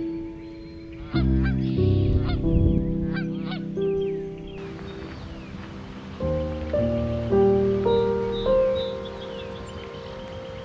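Geese honking repeatedly over instrumental background music with long held notes. The honks come for a few seconds starting about a second in, and a few small bird chirps come near the end.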